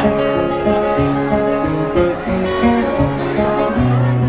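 Acoustic guitar strummed and picked in an instrumental passage of a live folk song, with bass notes moving under a melody of held notes.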